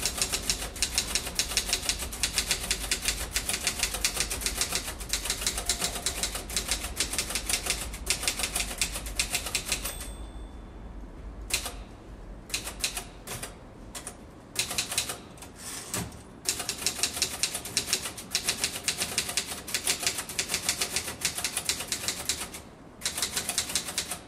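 Rapid typing on a keyboard, many keystrokes a second in long runs. The keystrokes thin to scattered clicks for a few seconds about halfway through, then pick up again.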